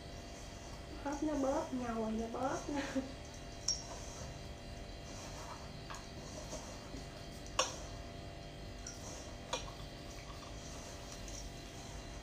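Hands kneading dough in a stainless steel mixing bowl, with a few sharp clicks against the bowl, the loudest a little past halfway. A brief wordless vocalizing about a second in.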